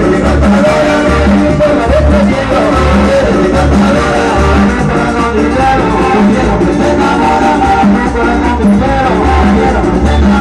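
Latin band music played from a television: electric bass, drum kit and percussion in a steady dance rhythm, with a man singing over it.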